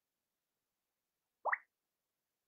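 Near silence broken about one and a half seconds in by a single short plop that rises quickly in pitch.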